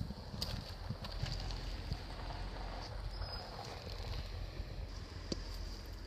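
Faint outdoor background: a steady low rumble with an even hiss, and a few faint clicks.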